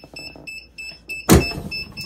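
Heat press timer beeping, a short high-pitched beep several times a second, signalling that the seven-second press time is up. About a second and a half in comes one loud clunk as the clamshell heat press is swung open, and the beeping stops soon after.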